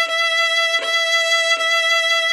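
Violin holding one steady high note, bowed back and forth in the upper quarter of the bow toward the tip, with a brief bow change at the start and another just under a second in.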